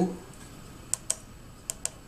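Four short, sharp clicks in two quick pairs, about a second in and again just before two seconds: pushbutton soft keys on a PMA450A aircraft audio panel being pressed.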